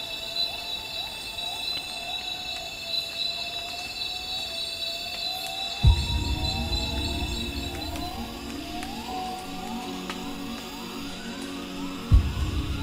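Gibbon song in a tropical forest: a run of rising whooping calls that climb higher and come faster as the bout builds, over steady insect trills. About six seconds in, a low thump brings in background music.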